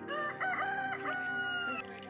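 Rooster crowing once: a stepped cock-a-doodle-doo that ends in a long held note, over background music.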